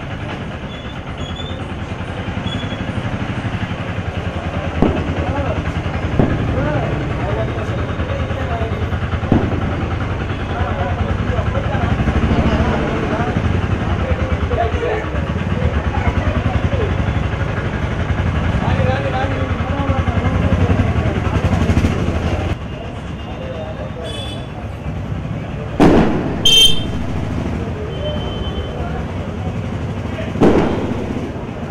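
People talking over a steady engine hum. Around three quarters of the way in the sound drops, and then a couple of sharp, loud noises follow.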